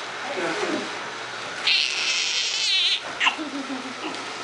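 Newborn baby crying in short high-pitched wails, the loudest lasting about a second from near the middle.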